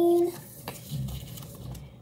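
A light tap, then soft rubbing and handling noise as a sheet of paper is slid and picked up off a hard countertop.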